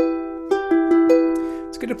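Ukulele strings of a fretted E minor chord plucked one at a time, each note ringing on, about five notes in the first half. Plucking string by string like this checks that every string sounds clearly and that no finger lying too flat mutes a neighbouring string. A man's voice comes in near the end.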